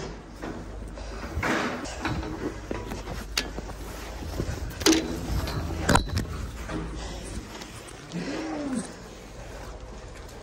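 A person breathing hard, out of breath from the exertion, with a few sharp knocks of handling gear against the pen. A short low cow moo that rises and falls comes about eight seconds in.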